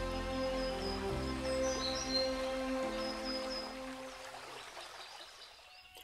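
Soft background music of held chords that fades away near the end, with a few faint bird chirps over it.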